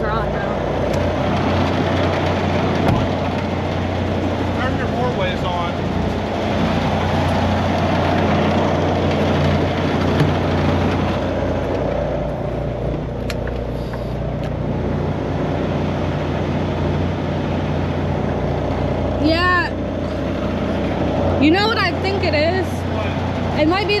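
Semi-truck diesel engine idling steadily, heard from inside the cab. A dog whines a few times near the end.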